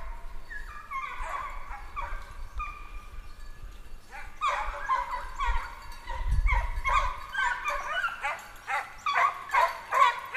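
Several deer hounds baying, their voices overlapping as they work a deer's scent, the cry growing thicker and louder from about halfway in.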